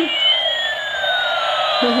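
Battery-operated bump-and-go toy airplane playing its electronic sound effect: two tones gliding at once, one rising and one falling, over a steady whirr as it drives about on its wheels. A child laughs near the end.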